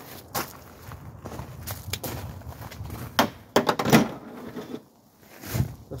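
Handling clicks and clunks from a Glock 22 .40 pistol as a feeding malfunction is cleared, with a few sharp knocks about three to four seconds in.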